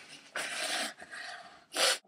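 A person blowing their nose into a tissue twice: a longer blow about a third of a second in and a shorter, louder one near the end.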